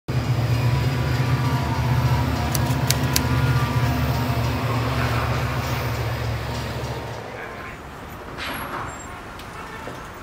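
A train's low, steady rumble with a few sharp clicks, fading away over the last three seconds.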